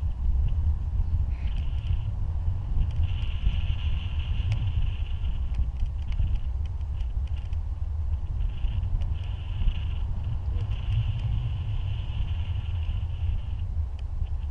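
Wind rushing over the microphone of a camera held out in flight under a tandem paraglider: a steady low rumble, with a higher hiss that comes and goes every few seconds.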